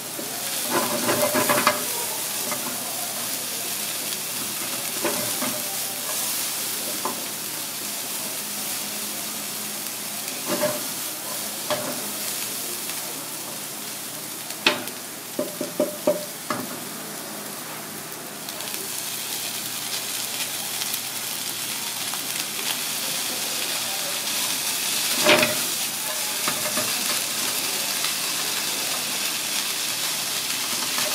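Diced onion, bell pepper and carrot sizzling in oil in a frying pan, and later cooked rice being stir-fried in it, with a steady hiss. A spatula stirring and scraping the pan knocks against it now and then, in a few sharp taps.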